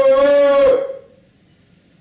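A man imitating a dog's howl with his voice: one long, loud, steady call that cuts off under a second in.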